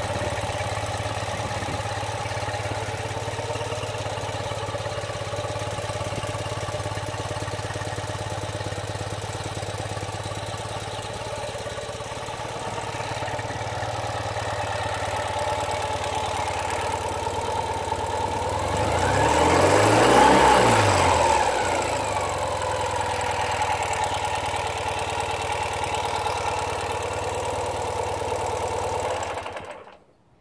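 Ural Sportsman's air-cooled flat-twin engine idling steadily. About twenty seconds in, one throttle blip rises and falls in pitch. The sound cuts off just before the end.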